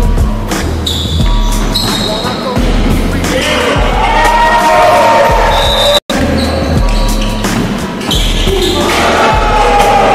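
Background music with a heavy, repeating bass line, cutting out for an instant about six seconds in at an edit.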